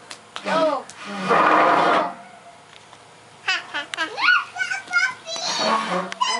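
Young children's high-pitched voices in short wordless bursts of calls and squeals. The loudest is a cry lasting about a second, about a second in, followed by a brief lull.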